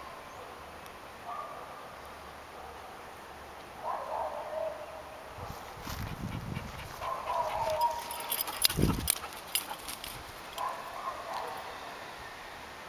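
Dogs playing on a dirt mound: a few short high-pitched calls come and go, and through the middle there is a run of scuffling, clicking and knocking.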